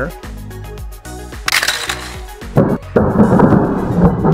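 A spring launcher in a plastic toy garage playset snapping as it fires a Transformers Rescue Bots Flip Racer toy car, about two and a half seconds in, followed by about a second of the plastic car rolling across the table. Background music throughout.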